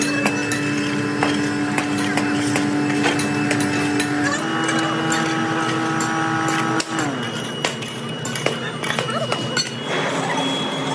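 A metal bar knocking and scraping against broken firebrick and slag on a crucible pit furnace, with scattered sharp clinks, over a steady droning tone that steps up in pitch about four seconds in and glides down about seven seconds in.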